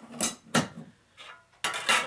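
A thin metal cookie tin and an aluminium mess-kit pot knocking and clinking against each other as the tin is set on and lifted off, a couple of light metallic knocks followed by a louder scrape near the end.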